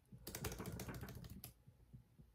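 Computer keyboard keys clicking in a quick run of keystrokes that stops about a second and a half in.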